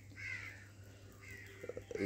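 Two faint bird calls, about a second apart, over a low steady hum.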